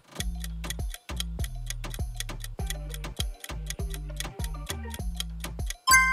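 Countdown timer sound effect: fast, even ticking over light background music with a steady bass pattern, ending in a bright chime as the time runs out.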